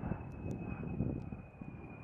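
C-130J Super Hercules turboprops running as the aircraft comes in to land: a steady high whine over a low, uneven rumble, the whine drifting slightly lower in pitch and the sound easing off toward the end.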